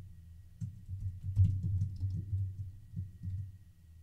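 Typing on a computer keyboard: a run of irregular keystrokes, busiest in the middle.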